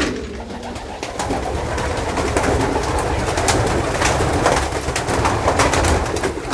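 A flock of domestic pigeons cooing, with many quick wing flaps and clatter as they flutter down and land in a loft pen.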